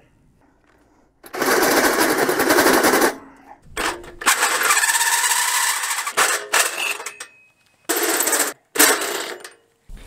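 Cordless drill driving a hole saw through the steel wall of a fire ring, a loud harsh grinding chatter as the teeth bite into the metal. It comes in runs: one starting about a second in and lasting about two seconds, a longer one from about four to six seconds, and two short bursts near the end.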